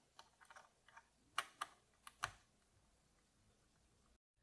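Faint ticks of a screwdriver turning small screws in a metal CPU die-guard mounting frame. A few light ticks come first, then three sharper clicks near the middle.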